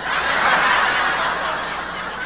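Audience laughing, loudest just after the start and slowly dying away.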